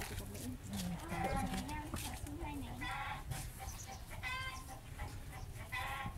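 Indistinct voices of people talking off-mic in short bursts, over the low rumble of wind on the microphone.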